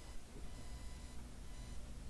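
Faint steady room tone: a low hiss with a soft steady hum and low rumble underneath.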